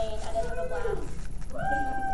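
A young woman's voice drawing out two long, wavering hesitation sounds while she searches for words, over a steady low hum.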